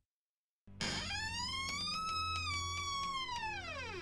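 A wooden door's hinges creaking as it swings open: one long, pitched creak that starts just under a second in, rises slightly and then slides down in pitch, over a low hum.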